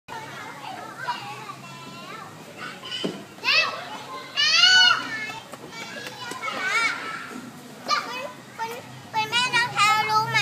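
Young children's voices at play: high-pitched calls and squeals, loudest about three and a half and five seconds in, with quick chatter near the end.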